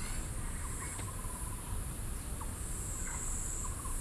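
A steady high-pitched chorus of insects in the trees, growing a little louder near the end, with a few brief chirps and a low rumble underneath.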